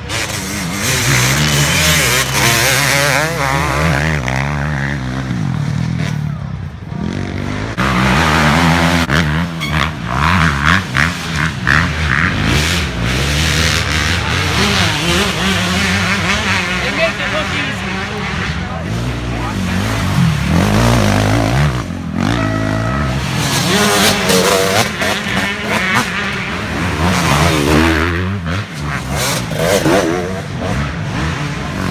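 Dirt bike engines revving hard as riders work through a rough trail section, the pitch rising and falling again and again with throttle changes.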